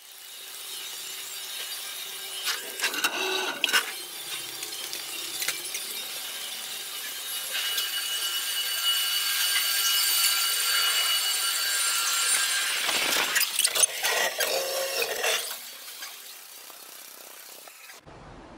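Fast-forwarded location sound of someone walking through a hotel lobby and corridors: a rushing, raised-pitch noise with a few steady high tones. Clusters of quick knocks and clatter come a few seconds in and again near the end.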